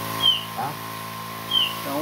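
Electric backpack sprayer's small pump motor running with a steady whine. A short high chirp that falls slightly in pitch comes twice over it.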